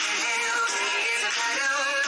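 A pop song with lead vocals playing from a radio stream through a phone's speaker. It sounds thin, with no bass.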